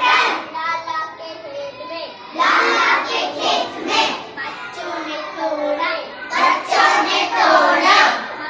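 A young boy singing a Hindi children's rhyme in phrases, with short breaks between lines.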